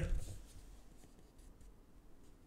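Faint rustle of a large paper record insert being handled, mostly in the first half-second, then quiet room tone.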